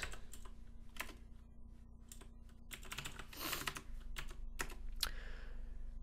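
Computer keyboard keys clicking softly in irregular spurts as code is typed.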